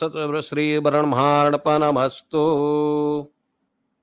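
A man's voice chanting a Hindu ritual mantra in long, drawn-out sung phrases, breaking off a little after three seconds in.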